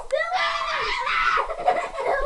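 Children screaming and shouting in high, gliding voices, with a little giggling.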